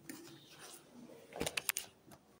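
Handling noise from the recording device: faint rustling, then a quick cluster of sharp clicks and knocks near the end as the camera is moved.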